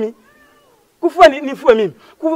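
After about a second of pause, a man speaks in a loud, raised voice.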